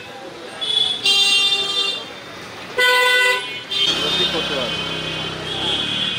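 Vehicle horns honking in street traffic: a blast of about a second starting about a second in, then a shorter one near the middle. After them come a low motor hum and voices.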